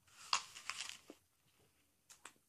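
A bite into a crisp Granny Smith apple, close to the microphone: a crunching, tearing snap of the flesh lasting just under a second, followed by a single small click.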